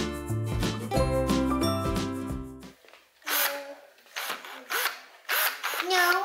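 Background music that stops abruptly about halfway through, followed by several short, irregular bursts from a handheld power tool.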